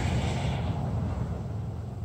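Steady outdoor background noise: a low rumble with a hiss that eases off a little under a second in.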